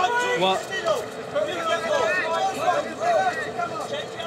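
Overlapping voices of an arena crowd, people calling out and talking over one another.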